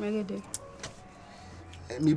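A brief voiced sound from a person, then a quieter stretch of outdoor background with a faint steady low hum and a couple of light clicks.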